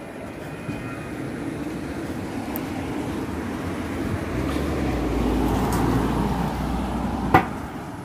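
A motor vehicle passing on the road: traffic noise that builds over several seconds to a low rumble and then fades. A single sharp click comes near the end.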